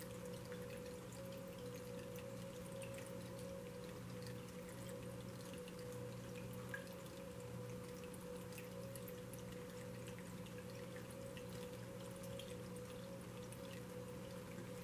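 Faint, steady trickle of water with scattered small drips, from a small tabletop water feature, over a steady low electrical hum and a faint steady tone.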